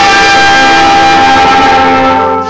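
Brass band of trumpets, trombones and tuba playing very loud, holding one long chord.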